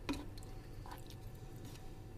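Wooden spoon stirring a thin, watery semolina-and-vegetable mixture simmering in a nonstick pan as the water cooks off, faint, with a few soft clicks.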